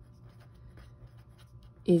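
Felt-tip pen writing on paper: a run of faint, short scratchy strokes as a word is written.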